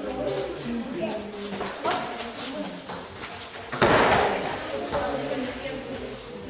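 Two sparring fighters going down onto a padded tatami mat in a takedown: one heavy thud of bodies hitting the mat about four seconds in, over background voices.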